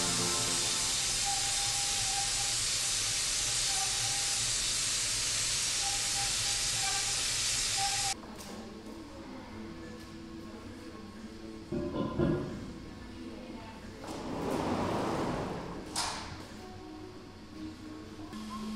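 Compressed-air paint spray gun spraying a wheel rim with a steady loud hiss, which cuts off suddenly about eight seconds in. After that, a quieter workshop with a knock, a short swelling rush and a click.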